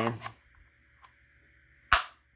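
A single loud, sharp click near the end as a custom Kydex sheath snaps free of its retention on a folded Silky Gomboy saw.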